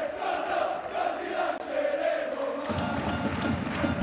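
Football supporters in the stands chanting together in a sustained sung chant, with rhythmic clapping joining in during the second half.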